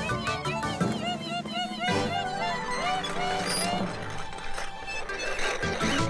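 Cartoon background music, with short chirps from the animated birds repeated over it.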